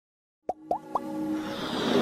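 Logo intro sound effects: after half a second of silence, three quick rising plops, then a sustained swell that builds in loudness.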